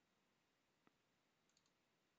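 Near silence: room tone, with one faint computer-mouse click a little under a second in and three tiny ticks just after it.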